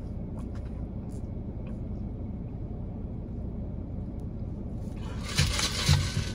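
Low steady rumble inside a car, with a few faint clicks. About five seconds in, a louder hissing slurp of water and air sucked through a straw from a nearly empty tumbler of ice water.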